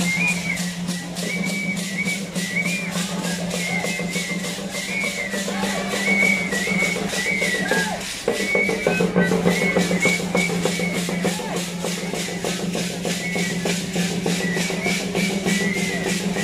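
Traditional dance music: a high, shrill flute melody over a steady drumbeat of about three strokes a second, with a low steady drone underneath that drops out briefly about halfway through.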